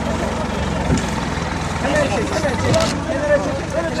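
A steady low engine hum, with rescue workers' voices calling over it from about two seconds in.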